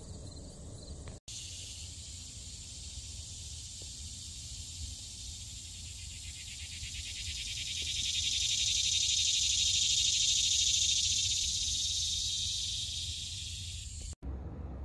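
Insects chirring in a steady high hiss that swells for a few seconds in the middle and then eases, over a steady low hum, broken by a brief silent gap about a second in.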